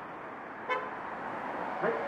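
A car horn gives one brief toot from a passing car, a driver's gesture of support for the street speech, over low traffic noise.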